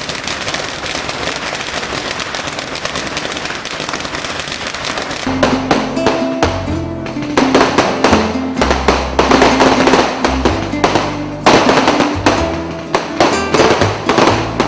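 A string of firecrackers crackling rapidly and without a break. About five seconds in, music with low held tones and a beat comes in, over loud sharp bangs of fireworks.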